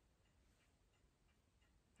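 Near silence: faint room tone with a clock ticking softly and regularly.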